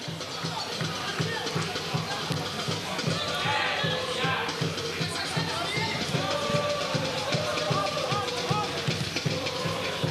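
Stadium crowd with supporters' drums keeping a steady, even beat, and voices singing or chanting over it.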